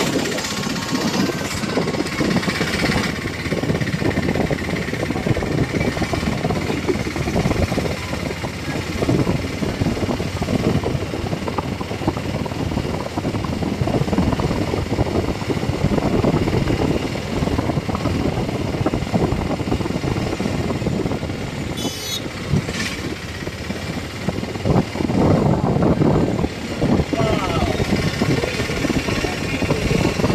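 Continuous rush of wind on the microphone and the running noise of a vehicle travelling along a road at speed. A short high tone comes through about two-thirds of the way in.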